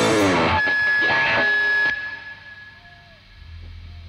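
A live reggae band's last chord ringing out after the drums and bass stop, with one high note held, then dying away about two seconds in, leaving a faint low hum.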